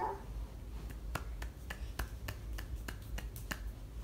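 About a dozen light, sharp clicks made by hands, irregularly spaced at roughly three or four a second, starting about a second in and stopping just before the end.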